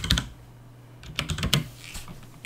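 Computer keyboard keystrokes: a couple of key clicks at the start, then a quick run of several more about a second in as a short command is typed and entered.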